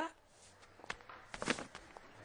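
A few faint, irregular footsteps in the second half.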